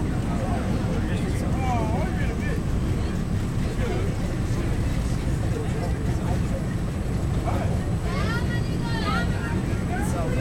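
MBTA Red Line subway car running at speed, heard from inside the car: a steady low rumble of wheels on the track.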